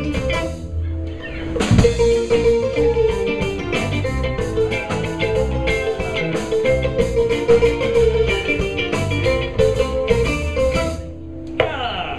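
Live West African band playing an instrumental passage: kora with electric guitar, bass guitar and drum kit. The music thins out briefly near the end, then the full band comes back in.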